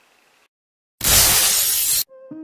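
An edited intro sound effect: after a moment of dead silence, a sudden loud burst of crashing, shatter-like noise starts about a second in, lasts about a second and cuts off abruptly.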